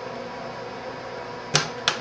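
Two sharp clicks about a second and a half in, a third of a second apart: the retention clips of a motherboard DIMM slot snapping shut on a DDR3 RAM module as it is pressed home. This is the positive click that means the module is fully seated.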